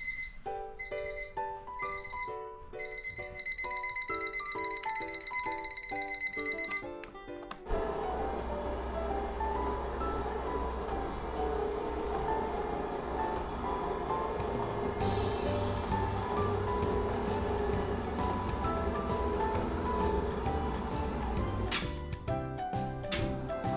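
Background music. Over the first seven seconds a high electronic beeping, like an alarm clock, sounds in separate beeps and then in fast pulses. About eight seconds in, the music changes to a fuller, steadier piece.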